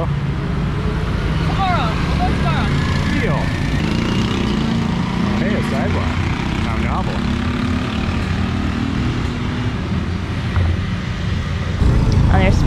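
Passing street traffic of motorbikes and scooters: a steady engine hum that rises a little in pitch over several seconds and fades near the end, over a low rumble, with faint voices in the background.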